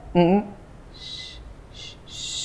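A man blowing short puffs of breath onto his eyeglass lenses to clear off dust: a longer breathy puff about a second in and a shorter one near the end.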